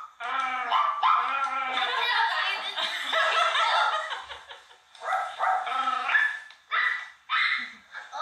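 Two women imitating dogs with their voices, one yipping like a small yappy dog and the other barking like an angry dog, in short bursts broken by laughter.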